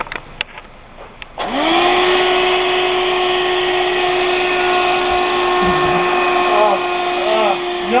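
Vacuum cleaner switched on about a second and a half in, after a few clicks; its motor quickly spins up to a steady whine. Near the end the pitch swoops up and down several times.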